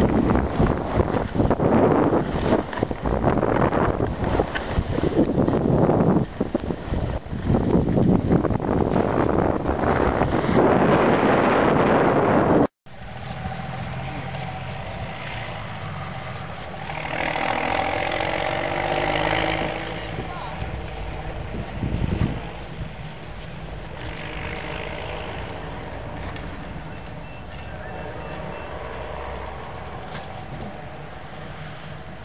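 Wind buffeting the microphone in loud, uneven gusts while moving fast down a snowy ski slope. This cuts off suddenly about thirteen seconds in, giving way to a much quieter, steady outdoor background with a few seconds of people talking.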